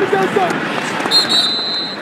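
Football stadium crowd noise with a man's voice briefly at the start. About a second in, a referee's whistle sounds steadily for most of a second, blowing the play dead after a tackle.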